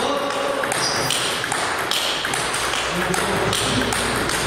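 Table tennis rally: the celluloid ball clicking off the rubber-faced paddles and bouncing on the table, a sharp tick about once a second.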